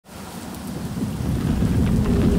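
A deep, rumbling sound with a hiss above it, fading in from silence over the first second or so.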